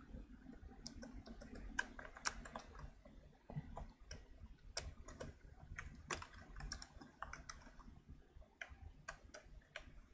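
Faint, irregular keystrokes on a computer keyboard: separate clicks with short pauses between them as code is typed and deleted.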